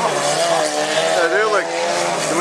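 Several stock cars racing on a dirt autocross track, their engines running hard, mixed with a man's voice talking loudly, likely from the track's loudspeakers.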